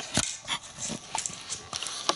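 African grey parrot on a wooden tray table making a rapid run of clicks, taps and short noises, with a thump a moment after the start.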